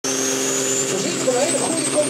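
Tractor-pulling tractor's engine running flat out under load: a steady drone with a high whine that rises slowly in pitch. A voice joins about a second in.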